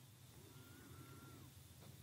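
Near silence: faint room tone with a low hum, and a faint thin whistle-like tone for about a second near the middle.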